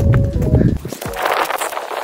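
Running footsteps on a rocky trail with wind rumbling on the microphone, over background music; about halfway through the footsteps stop and a rush of hiss follows.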